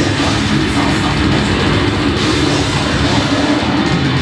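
Death metal band playing live at full volume: heavily distorted guitars and bass over fast drumming, with rapid cymbal hits about half a second in.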